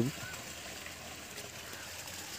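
Faint, steady outdoor background hiss with no distinct events, just after a man's voice stops at the very start.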